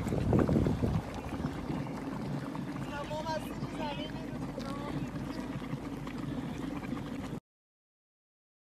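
Steady rushing noise of wind on a phone microphone mixed with the running water of a steaming geothermal stream, with faint voices in the middle. The sound cuts off abruptly near the end.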